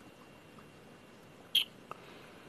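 Quiet room tone broken by one short, sharp click about one and a half seconds in, then a fainter tick just after.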